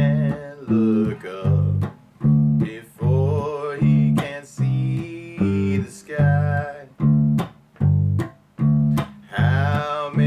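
Electric bass guitar playing a steady line of notes, about two a second, following the song's chords in G, under a backing mix of guitar and a melody line that bends in pitch.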